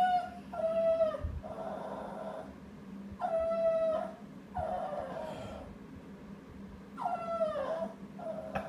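Small long-haired dog whining and howling in a series of about six drawn-out, high-pitched calls, the last one falling in pitch near the end. It is whining for a lost ball it cannot reach.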